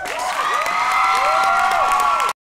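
Audience clapping and cheering loudly at the end of a ukulele song, with long high-pitched screams held over the clapping.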